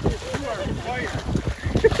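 A Great Dane puppy running and splashing through shallow sea water, with wind noise on the microphone.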